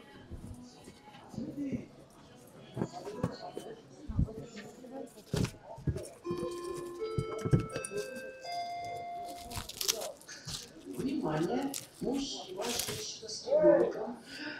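A short electronic chime: a run of clear notes stepping upward, about six seconds in and lasting some three seconds. Around it are background voices and scattered clicks and rustles of handling.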